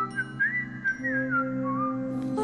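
A slow whistled melody with gliding notes over soft background music; a low held note comes in about halfway through.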